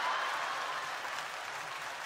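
Theatre audience applauding, easing off slightly toward the end.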